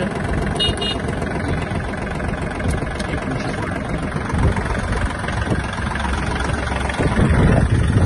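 Kubota L1-185 mini tractor's three-cylinder diesel engine idling steadily, a little louder near the end.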